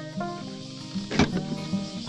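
Makita cordless electric lawn mower's motor running steadily.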